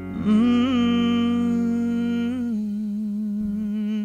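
Song outro: a singer holds one long hummed note with a slight waver, stepping down in pitch about two and a half seconds in, over a soft sustained backing that drops away at the same point.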